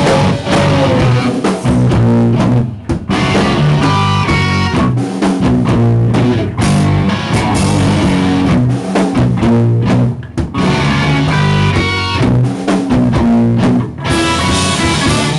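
Live rock band playing: guitars, bass and drum kit. The band stops short for a moment about three seconds in and again about ten seconds in.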